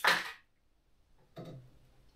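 A sharp clack from the pendulum hammer of an Izod impact tester right at the start, dying away within half a second.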